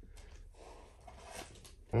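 Quiet room with a person's soft breath, swelling a little about a second in, in a pause between words.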